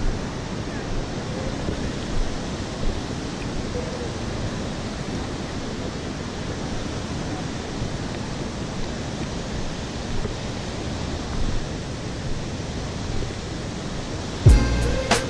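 Steady outdoor rushing noise, even and without pitch, with a few small brief knocks or voices rising above it now and then.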